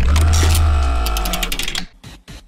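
A news-bulletin transition sting starts suddenly with a deep boom under a held, many-toned chord, then fades out just before two seconds.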